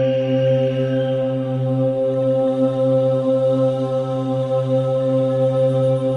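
Low, mantra-style chanting held on one steady pitch, heard as a music track.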